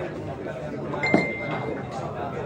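A single sharp clink of hard objects about a second in, followed by a short ringing tone, over a murmur of crowd voices.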